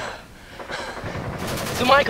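Bursts of rapid gunfire in the background, building from about a second in, with a brief shouted voice near the end.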